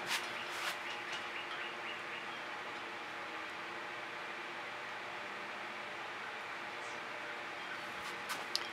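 Steady, quiet backyard background ambience with a faint even hum, and a couple of soft ticks in the first second.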